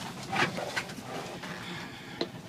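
Low, steady running noise of the International Harvester 1300 truck heard inside its cab as it is put in gear and starts to move, with a short breathy noise about half a second in.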